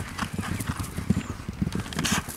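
Hoofbeats of racehorses galloping on grass turf, a quick, uneven run of dull knocks.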